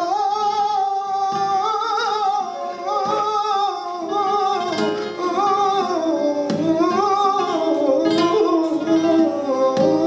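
Male flamenco cantaor singing a fandango in long, wavering melismatic lines, accompanied by flamenco guitar with occasional strummed chords.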